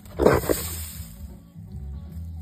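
A boar hog gives one short, loud grunt about a quarter second in as it charges the trap fence, over steady background music.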